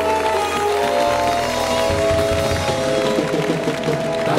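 Live band music: accordion, keyboard and drum kit playing the closing bars of an Azerbaijani song. Long held notes over a steady bass, with drum hits growing busier in the second half.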